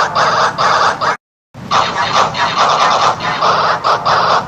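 A short voice-and-sound clip run through a heavy electronic distortion effect, coming out as harsh, buzzing bursts in quick succession. It cuts to silence for a moment just after a second in, then starts again.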